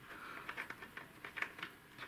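Flash hider being screwed by hand onto an AR-15's muzzle thread: faint, scattered light clicks and metal rubbing on the threads.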